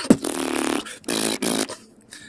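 Beatboxing: a deep kick-drum sound at the start, a buzzing bass tone for about half a second, then sharp hissing snare and hi-hat sounds in the second half.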